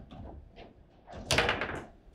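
Table football in play: the hard ball knocked by the plastic men and rods clacking, with one loud bang a little past halfway as the ball is struck hard or hits the table wall.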